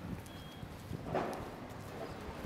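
Footsteps on stone paving over faint street background noise, with a brief high tone early on and a louder short sound a little past the middle.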